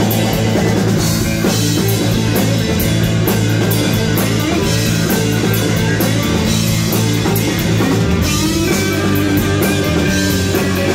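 Live rock band playing a passage of the song: electric guitars, bass guitar and drum kit, with cymbals struck on a steady beat, loud and unbroken. No singing is heard.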